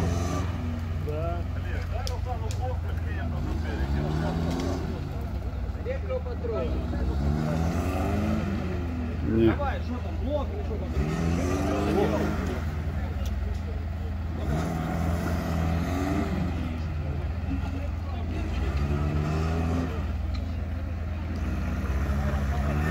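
Lada Niva's engine revving up and dropping back again and again, every two seconds or so, as its wheels spin in deep bog mud with the car stuck. A brief louder knock comes about halfway through.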